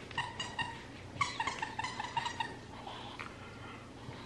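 Squeaker in a plush cupcake dog toy squeezed repeatedly: a short run of squeaks, then a longer run of quick, even-pitched squeaks about a second in.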